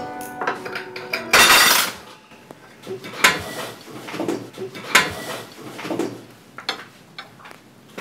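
Knife and fork on a plate during a meal: a loud scrape about a second and a half in, then a series of sharp clinks of metal cutlery against the dish.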